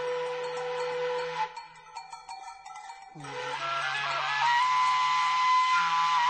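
Instrumental background music: a sustained melody over a low drone. It drops to a quieter, sparser stretch about a second and a half in, then swells again, with a long held high note entering near the end.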